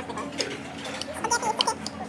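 Scattered light clicks and clinks of tableware on plates and dishes at a dining table, with voices behind.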